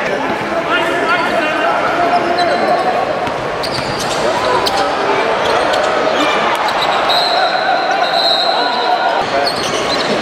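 Basketball bouncing on a hardwood court amid players' and spectators' voices, with sharp knocks and a drawn-out high squeak about seven seconds in, echoing in a large hall.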